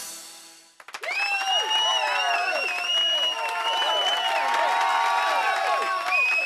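A song ends and its sound dies away in the first second; then an audience breaks into applause, with whooping, cheering voices and a long high whistle through the clapping.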